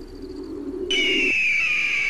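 A bird of prey's scream: one loud, high, drawn-out call starting about a second in and sliding slowly down in pitch.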